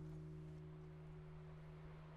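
The song's final acoustic guitar chord fading out quietly: a low note holds steady while the higher notes die away.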